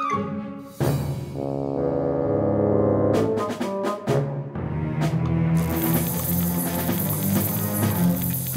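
Dramatic background music: sustained brass chords with timpani strokes. From about five and a half seconds a steady hiss joins the music, a sizzling-fuse sound effect for the firework lying on the toy track.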